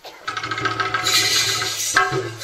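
Live jatra band music starting up: a held harmonium chord over a quick run of drum strokes, with a bright high wash about a second in.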